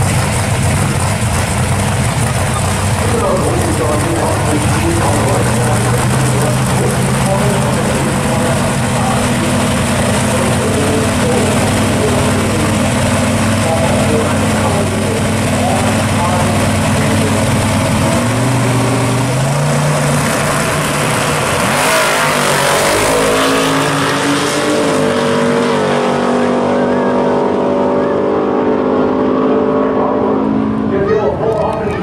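Drag-racing engines of a 1941 Willys gasser and a Chevelle idling loudly on the starting line, stepping up in pitch around 18 seconds in. About 22 seconds in comes a sudden loud burst as the cars launch. The engines then pull away down the track, rising in pitch in steps through the gear changes and growing more distant.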